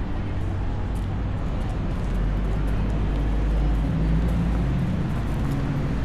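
Street traffic: a steady low rumble of passing car engines, with a heavier engine hum coming in about four seconds in.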